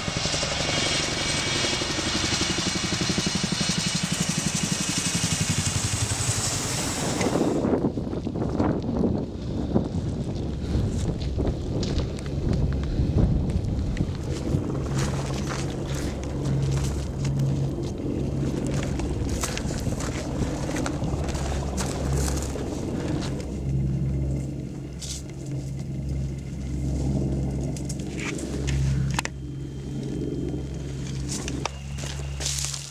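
CH-47 Chinook tandem-rotor helicopter at close range: loud rotor wash with a steady high turbine whine, cut off abruptly about seven seconds in. After that comes a lower drone with scattered clicks and crunches of footsteps and gear on rocky ground.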